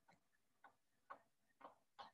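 Chalk writing on a blackboard: three or four faint, short ticks about half a second apart as the chalk strikes and strokes the board, against near silence.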